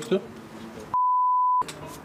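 A broadcast censor bleep: one steady high beep, about two-thirds of a second long, starting about a second in, with all other sound cut out beneath it, masking a spoken name.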